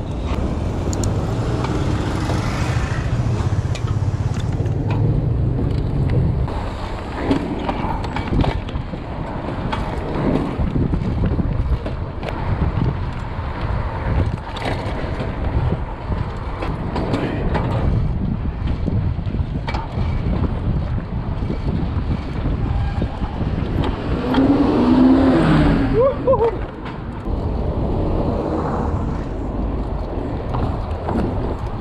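Freight train wagons rumbling past at close range for the first several seconds, then a steady rush of wind and road noise from a bike being ridden. About 25 seconds in, a brief sound with a wavering, rising-and-falling pitch cuts through.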